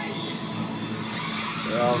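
Animated-film sound of a giant flood wave rushing in: a steady, dense rush of water, played through a TV speaker and recorded off the set. A man's voice cuts in near the end.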